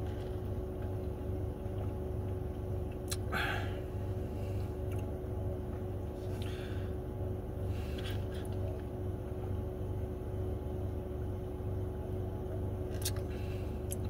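Steady low hum inside a car, with a few brief sips through a straw from a plastic cup of iced latte.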